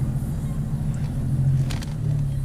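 A vehicle's engine running steadily, heard from inside the cabin as a low, even hum, with faint road noise under it.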